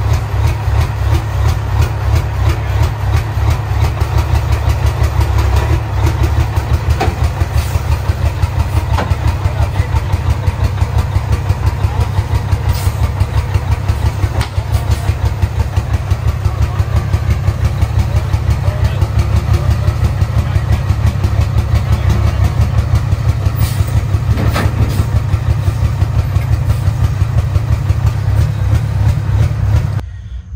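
Big-rig pulling truck's diesel engine idling with a loud, deep, rapidly pulsing exhaust note as the truck creeps down off a trailer.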